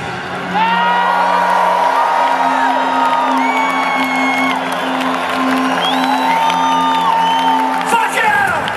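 Arena crowd cheering, whooping and whistling over a held low note from the band as the song finishes.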